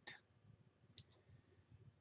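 Near silence, with a faint computer mouse click, a quick double tick, about a second in.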